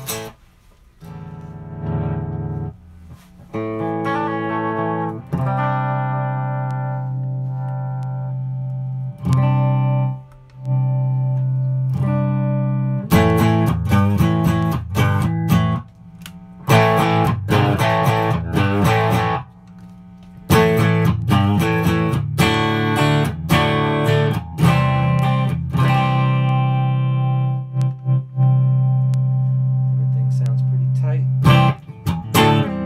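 Fender Road Worn 50s Telecaster electric guitar played amplified: strummed chords and picked notes, some left ringing for several seconds, with short breaks between phrases and a long ringing chord near the end. This is a playing check of the pickups and electronics at the end of a setup.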